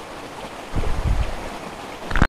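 Steady rush of stream water, with a low rumble of wind or handling on the microphone swelling briefly about three-quarters of a second in.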